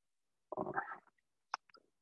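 A man's hesitant 'uh' filler about half a second in, followed by a short faint click and mouth sounds; silence otherwise.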